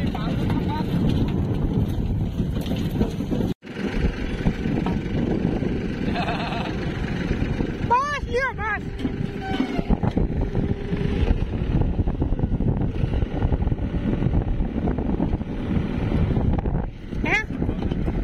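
Tractor engine running steadily with the rattle of its manure-loaded trolley, wind on the microphone. Brief chirping sounds come about eight seconds in and again near the end.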